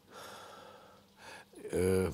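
A man drawing in an audible breath through the mouth, then a short voiced hesitation sound near the end as he begins to speak.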